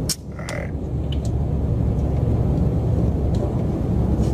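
Steady low rumble of a car on the move, heard from inside the cabin, with a few faint clicks.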